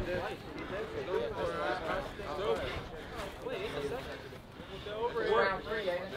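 Men's voices talking and calling out at a moderate level, with a louder voice from about five seconds in.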